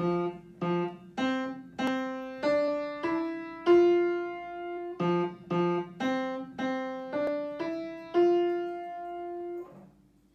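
Upright piano playing a simple, slow melody of separate notes about half a second apart, rising step by step. It comes in two matching phrases, each ending on a long held note, and the playing stops just before the end.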